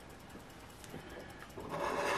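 A coin scraping the coating off a scratch-off lottery ticket: a few faint taps, then a steady raspy scratching that starts near the end.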